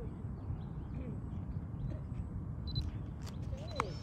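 Low steady outdoor rumble with faint distant voices and a few light clicks near the end.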